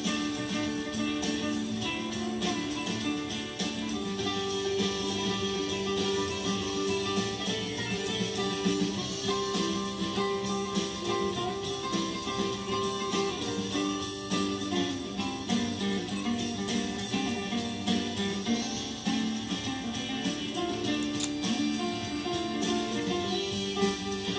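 Recorded country music, a guitar-led instrumental break of the song with steady plucked and strummed guitar lines.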